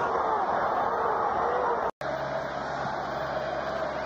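Stadium crowd noise, a steady din of many voices, broken by a sudden instant of silence about two seconds in where the footage is spliced.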